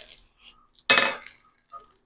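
A metal bread knife clinks sharply against the stone countertop about a second in and rings briefly, as the blade comes through the watermelon and the melon falls into halves. A few faint knocks and handling sounds come before and after.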